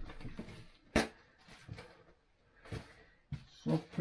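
Plastic bags being handled at a kitchen counter: one sharp click about a second in, then a few short, faint rustles.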